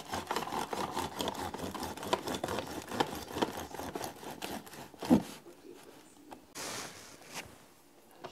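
A bread knife sawing back and forth through a homemade loaf in the slot of a plastic slicing guide: quick rasping strokes through the crust. The strokes stop about five seconds in, followed by a few softer scrapes and rustles as the slice comes free.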